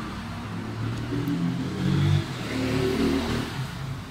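A motor vehicle engine going by, its pitch stepping up and down and loudest about two seconds in.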